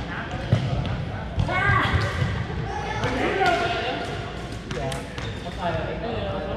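Badminton rally in a gymnasium: sharp racket-on-shuttlecock hits and footfalls on the hardwood floor, about half a second in, near a second and a half, and around five seconds, with players' voices between them in the echoing hall.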